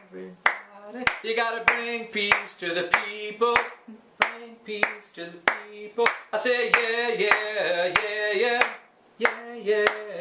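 A man sings a chanted call-and-response song, the kind children echo back, while clapping his hands to a steady beat of about one clap every two-thirds of a second.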